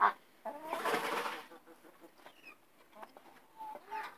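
Domestic hens clucking, with one louder, harsher squawk about a second in and a few short clucks near the end.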